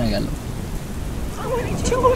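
Steady rain with a low thunder rumble, a background storm ambience under the narration. A narrating voice trails off just after the start and comes back near the end.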